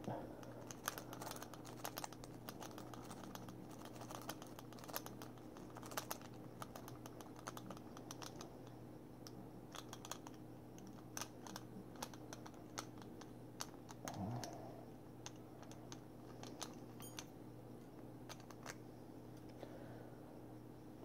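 Faint, irregular small metallic clicks and ticks of a lock pick being raked over the pins of a disc padlock held under a tension wrench.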